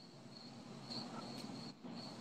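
Faint background chirping of an insect, a thin high pulse repeating evenly several times a second, over a low hum.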